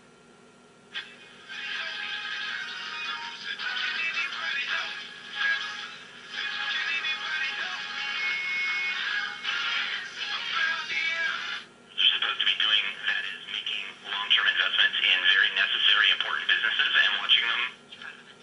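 Admiral 5R37 All American Five tube radio playing AM broadcast speech and music through its small speaker as it is tuned across the dial. About twelve seconds in, the sound cuts over to a different, louder station. The set is receiving well after its repair.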